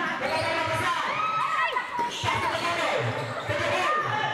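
Basketball game play: the ball bouncing on the court and sneakers squeaking in short rising and falling chirps, over spectators talking and calling out. Several bounces come together in the second half.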